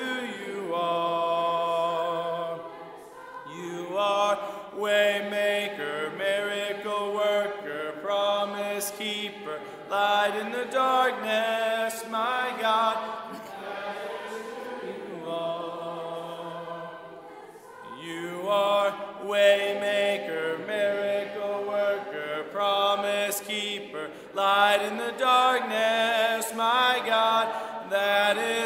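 A church congregation singing a hymn a cappella, many voices together with no instruments, in long held notes with short pauses between phrases.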